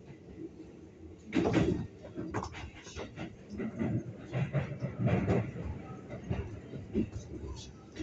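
Interior sound of a Keikyu 600 series train car nearing a station: low running rumble with irregular clunks and bursts, the loudest about a second and a half in, mixed with indistinct voice-like sounds.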